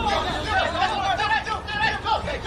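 Several voices shouting and calling out over one another around a football pitch during play.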